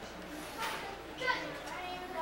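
Background chatter of children's and adults' voices, with no clear single speaker.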